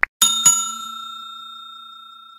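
A quick double click, then a bright bell ding struck twice in quick succession. It rings on and slowly fades: the notification-bell sound effect of a subscribe-button animation.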